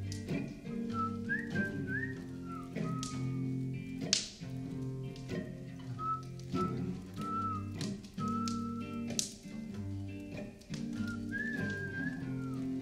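A whistled melody line, a single pure tone gliding between notes, over live band accompaniment holding steady chords. Two sharper strikes ring out about four and nine seconds in.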